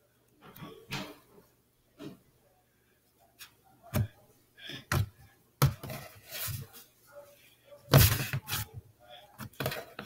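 Red slime being pressed, squeezed and kneaded by hand on a tabletop, giving irregular clicks and squelches. They are sparse at first and come closer together in the second half, the loudest about eight seconds in.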